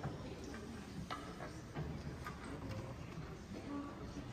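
Quiet auditorium room noise with no music playing: a faint low murmur with scattered light clicks and knocks, roughly one every half second to a second.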